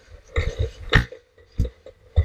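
Skateboard rolling and being pushed along a concrete sidewalk, giving irregular short knocks and thumps, about four in two seconds.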